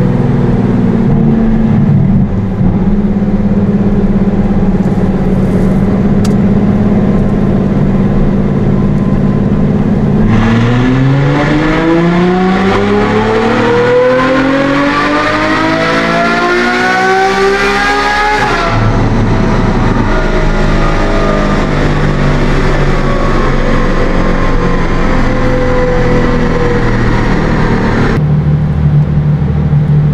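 Ferrari F12's naturally aspirated F140 V12 on a chassis dynamometer, a baseline power run on the original map: the engine holds a steady note for about ten seconds, then pulls at full throttle with its pitch climbing for about eight seconds until it cuts off sharply. It then winds down with slowly falling pitch and settles to a lower steady note near the end.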